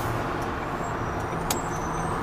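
Tipper lorry's diesel engine running steadily with road noise, heard inside the cab as it rolls slowly through a junction, with one light click about one and a half seconds in.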